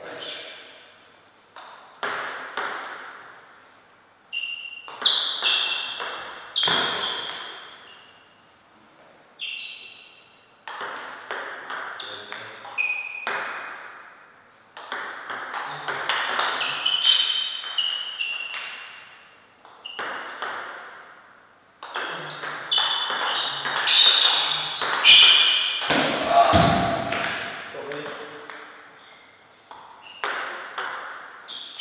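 Table tennis rallies: the plastic ball clicking off the table and the rubber bats in quick exchanges, each hit ringing briefly in the hall. The rallies are separated by short pauses between points.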